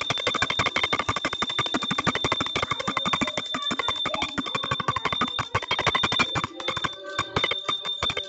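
A bell rung fast and continuously for an aarti, a steady high ringing over a dense run of rapid strikes.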